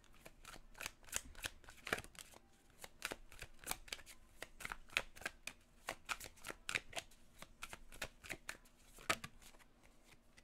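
A deck of oracle cards being shuffled by hand, the cards clicking against each other in quick, irregular strokes throughout.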